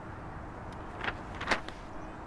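Sheets of writing paper handled and shifted, with two short paper crackles about a second in and halfway through, over a steady low background rumble.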